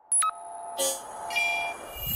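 Synthesized intro-animation sound effects: a sudden held chord of electronic tones, a short noisy hit a little under a second in, then high shimmering chime-like tones.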